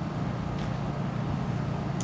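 Room tone: a steady low hum with no change.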